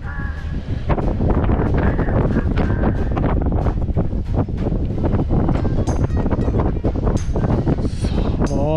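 Strong gusty wind buffeting the camera microphone, a loud low rumbling roar with irregular gusts.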